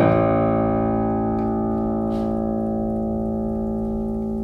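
Improvised jazz piano: a chord struck right at the start and left ringing, slowly fading.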